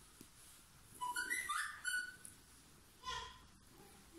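Bird chirping: a quick run of high whistled notes about a second in, and a shorter call near the three-second mark.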